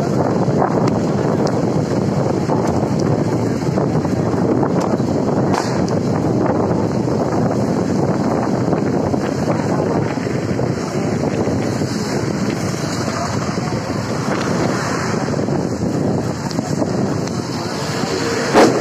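Steady rush of wind buffeting the microphone from a moving vehicle, mixed with road noise on a wet road.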